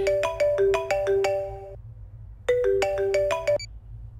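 Mobile phone ringtone: a short melody of quick notes, played once and then started again after a brief pause, cut off partway through the second time as the call is answered.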